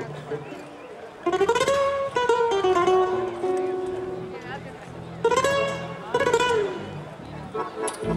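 Live gaucho folk band: a voice singing two long phrases with held, gliding notes over plucked acoustic guitar accompaniment.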